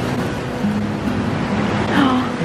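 Steady rushing noise of lake waves on a rocky shore mixed with wind, with background music of long held low notes running under it.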